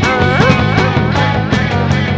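Psychedelic garage-rock music: a band recording with drums striking a cymbal about four times a second, a dense bass and guitar low end, and a lead line that bends up and down in pitch.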